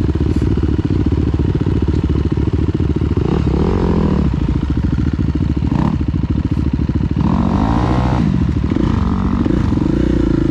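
Dirt bike engine at close range, the KTM 350 EXC-F's single-cylinder four-stroke, idling steadily with the revs rising and falling about three times and one short blip in between.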